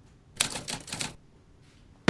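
A quick burst of sharp mechanical clicks, a typewriter-like transition sound effect, lasting under a second and starting about half a second in.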